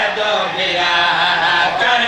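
Men's voices chanting a melodic recitation into microphones, one long unbroken sung line amplified through a public-address system.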